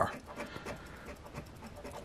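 Edge of an Engelhard silver bar scraping the coating off a scratch-off lottery ticket: a quiet, fast run of short rasping strokes.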